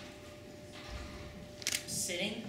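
Quiet room with a faint steady hum, a soft low thump about halfway through and two sharp clicks near the end.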